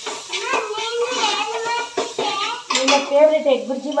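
A spoon stirring in a metal cooking pot, scraping and clinking against the pot several times, with people talking over it.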